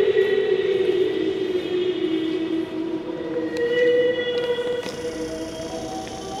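Slow sacred music in long, overlapping held notes, echoing through a cathedral, with the pitch shifting slowly from note to note.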